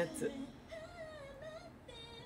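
Pop music video playing quietly from a television speaker: a woman's voice sings a wavering, held note.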